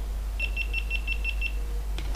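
GoPro Hero 5 camera powering off: a quick run of about seven short, high beeps lasting about a second.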